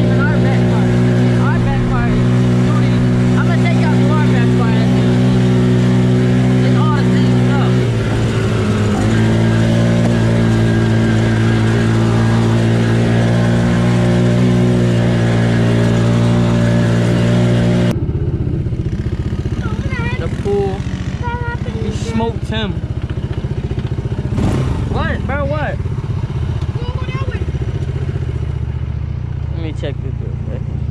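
Polaris RZR 170 EFI youth side-by-side's small single-cylinder four-stroke engine running at a steady pitch under way, dipping briefly about eight seconds in. After an abrupt cut about eighteen seconds in, the engine is heard quieter and lower, with voices over it.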